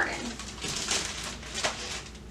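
Plastic produce bag full of garlic bulbs crinkling and rustling as it is handled and set down on a table, with a few sharp crackles in the middle.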